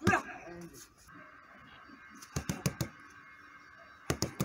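A punch with a short vocal shout right at the start, then, after a second and a half of quiet, four fast punches in quick succession smacking into a handheld strike pad.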